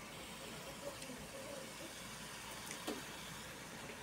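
Faint, steady sizzle of diced tomato, onion and chile frying in a pan, with a couple of soft knocks from a wooden spatula stirring them, about one and three seconds in.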